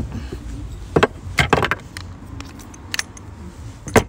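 Handling noise from a plastic-bodied magnetic heating filter with brass fittings being picked up and moved on a wooden table. There are a few separate clicks and knocks, with the sharpest one at the very end.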